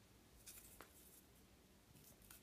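Near silence, with a couple of faint, short clicks of a phone in a plastic case being handled.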